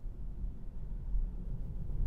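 Low, steady road and tyre rumble inside the cabin of a moving Tesla electric car.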